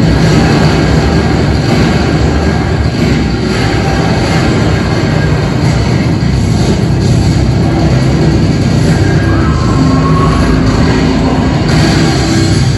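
Soundtrack of a 3D roller-coaster ride film played loud in a cinema: a continuous low rumble of coaster cars running on the track, mixed with music.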